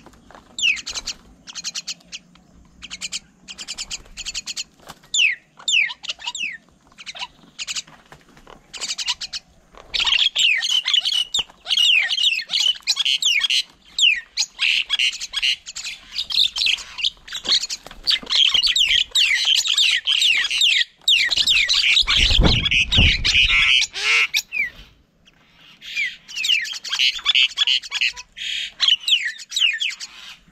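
Mynas at a feeding table calling: scattered sharp chirps and squawks at first, then dense, overlapping chattering from about a third of the way in, with a brief pause near the end. A loud low rumble, like a knock or wind on the microphone, comes about two-thirds of the way through.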